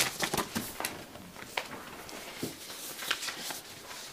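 Sheets of paper rustling and crackling as they are handled and sorted, a quick run of crackles in the first second and a half, then a few scattered ones.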